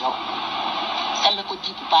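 A person's voice in a hissy, radio-like recording: a steady hiss for about the first second, then short fragments of speech.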